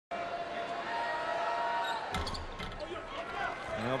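Arena crowd noise with a sustained pitched tone for about two seconds. A basketball then bounces a few times on a hardwood court.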